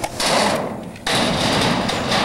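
Skateboard wheels rolling over concrete, a loud rough rumble that starts suddenly, fades, then surges again about a second in.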